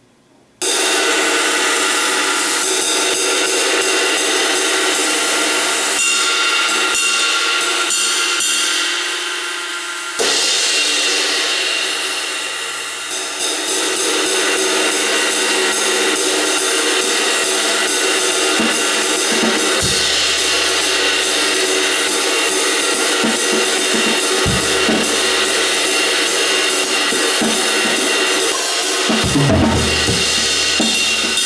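Zildjian 22-inch K Constantinople Special Selection ride cymbal, pin-lathed and fitted with a single rivet, played steadily with a drumstick so that its shimmering wash builds and sustains. A few low thumps come in during the second half.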